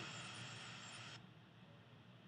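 Faint steady background hiss of the outdoor recording, with no voice or machine pattern, cut off suddenly about a second in to near silence.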